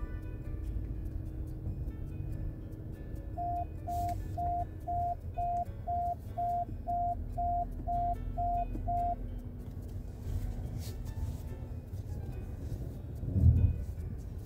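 BYD Tan parking-sensor warning beeping about two times a second, twelve short beeps at one pitch that stop about nine seconds in, warning of an obstacle close by while parking. A low thump near the end.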